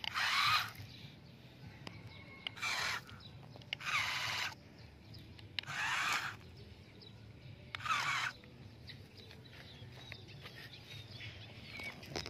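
Toy RC dump truck's small electric motor and gearbox whining in five short bursts, each about half a second, as the throttle is blipped and the truck creeps forward over sand.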